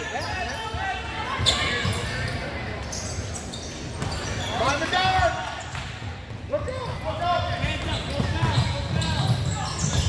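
Basketball game sounds in a gym: a ball bouncing on the hardwood court and players' feet moving, under scattered shouts and voices of players and spectators echoing in the hall.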